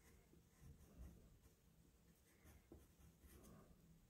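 Faint scratching of a graphite pencil on paper: several short sketching strokes, with small pauses between them.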